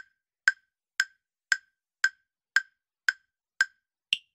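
Quiz countdown-timer sound effect: eight crisp, evenly spaced clock-like ticks, about two a second.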